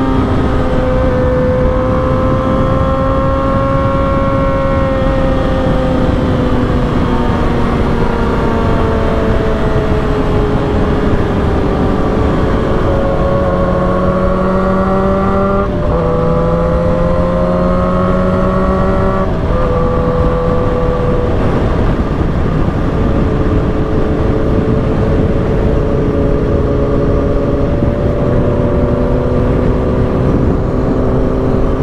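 Motorcycle engine running on the road under a steady rush of wind, its pitch drifting slowly up and down, with abrupt jumps in pitch around the middle.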